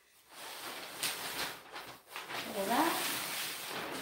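Large sheet of paper covering a table rustling and crinkling as it is pulled and slid across the tabletop.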